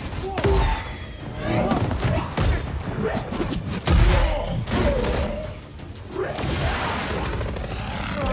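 Film fight-scene sound design over score music: a run of punches and thuds, with the heaviest impact, a crash with a boom, about four seconds in.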